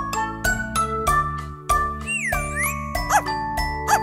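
Upbeat instrumental children's song intro with a steady, bouncy beat and chiming notes. About halfway through, a whistle-like tone slides down and back up.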